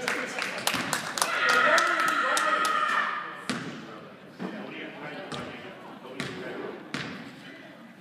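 A basketball bouncing on a hardwood gym floor: a quick run of bounces at first, then single bounces about once a second. Raised voices ring in the gym, loudest about one to three seconds in.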